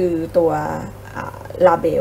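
Only speech: a woman's voice speaking Thai in a steady narration.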